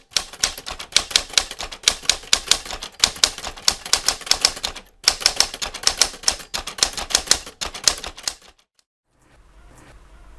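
Typewriter keys clacking in a rapid run of sharp strokes, a typed-text sound effect, with a short pause about halfway and stopping abruptly about a second and a half before the end.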